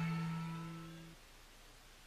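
Last held chord of the cartoon's opening theme music fading out, its sustained notes cutting off a little over a second in and leaving near silence.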